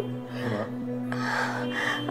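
Background drama score of steady held notes, with a person's breathy gasp in the second half.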